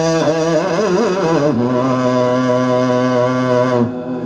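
Yakshagana bhagavata singing a bhamini padya verse in a man's voice, unaccompanied by drums: a winding, ornamented phrase, then one long held note that breaks off just before the end.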